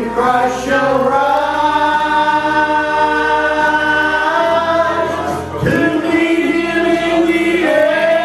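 A man singing a gospel song into a microphone, holding long notes: one for about five seconds, then after a short break another long note, with a fresh phrase starting near the end.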